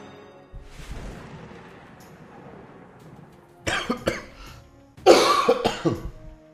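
A man coughing in two short fits, the second louder, over slot-game music.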